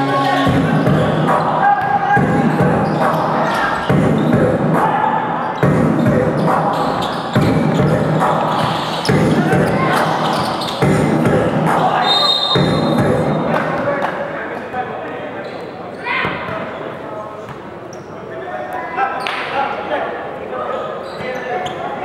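A basketball bouncing on a hard court during play, a thud every second or two, under the voices of players and spectators echoing in a large covered gym. A brief high whistle about halfway through is typical of a referee's whistle.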